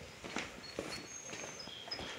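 A few soft footsteps on a concrete floor, faint, with some thin high peeps in the background.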